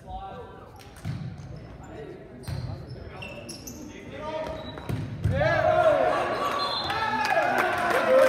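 Volleyball rally in a gymnasium: several sharp smacks of the ball being served, passed and hit, echoing in the hall. From about five seconds in, players and spectators shout and cheer loudly as the point is won.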